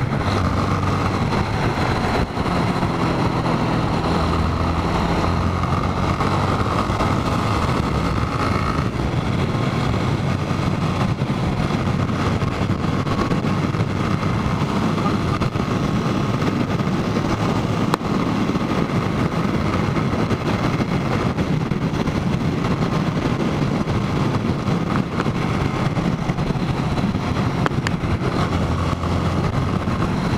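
Motorcycle engine running at road speed, heard under steady wind rush on the camera microphone, the engine note shifting a few times with the throttle.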